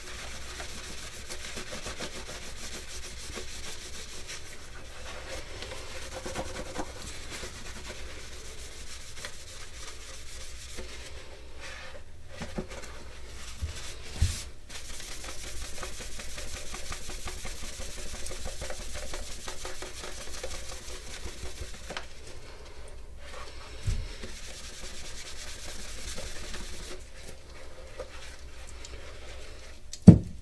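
A cloth buffing the waxed, graphite-dusted finish of an armor bracer: a continuous dry rubbing that stops briefly now and then. Two light knocks come about halfway through and again later.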